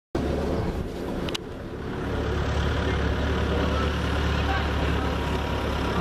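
Steady low rumble and hiss of outdoor background noise, with a sharp click about a second and a half in where the sound drops and then builds back up.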